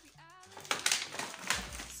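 Plastic-wrapped groceries rustling and clattering against a tiled floor as they are pushed aside by hand, in a few short knocks about two thirds of a second and one and a half seconds in.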